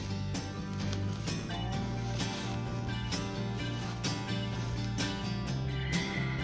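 Background music with plucked guitar and steady bass notes, in a country style.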